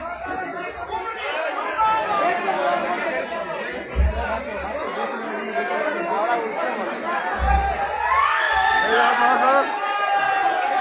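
A large crowd talking at once, a dense babble of many voices under a tent. Two short low thumps break through, about four and seven and a half seconds in.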